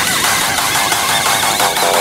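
Newstyle/makina electronic dance mix in a breakdown. A dense, fast-rattling synth texture plays with no bass drum, and a clipped synth riff comes in near the end.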